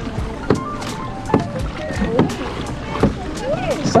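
Pedal kayak under way on choppy water: irregular short knocks about twice a second from water slapping the hull and the pedal drive, over a low rumble of wind on the microphone.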